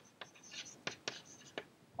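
Chalk writing on a chalkboard: a handful of faint, short taps and scratches as a word is written.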